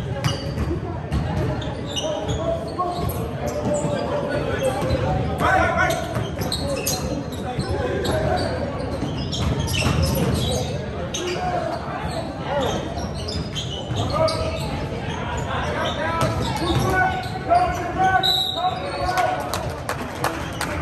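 Basketball game sounds on a hardwood gym court: the ball bouncing repeatedly, mixed with voices of players and spectators calling out, all echoing in a large hall.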